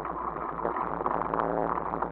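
Bicycle rolling over a rough dirt track: tyres on the dirt and gravel and the bike rattling, heard as a steady rough noise flecked with small clicks.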